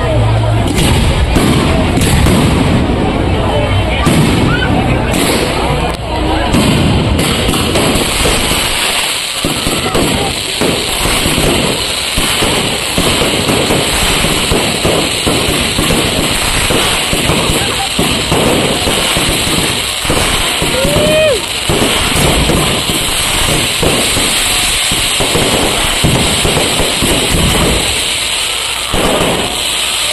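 A fireworks display in full barrage: a dense, unbroken run of bangs and crackling from bursting aerial shells.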